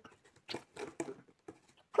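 A few short, faint scratches and rustles on a corrugated cardboard box as a cat paws at it and leans in, trying to hook a toy with her claws.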